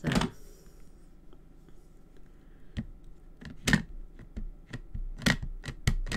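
A sharp click at the start, then, from about halfway, a string of short taps and knocks as a clear acrylic stamp block is pressed and tapped onto an ink pad to ink the stamp.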